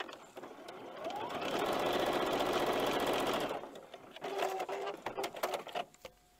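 Electric sewing machine stitching a strip onto a paper foundation: it speeds up over the first second or so, runs steadily, and stops about three and a half seconds in. A few clicks follow as the piece is handled.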